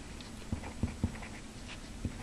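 Felt-tip marker writing on paper: a series of short, faint scratching strokes with gaps between them.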